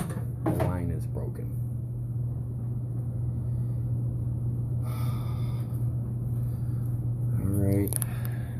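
A steady low hum throughout, with brief bits of a man's voice in the first second and again near the end, and a short hiss about five seconds in.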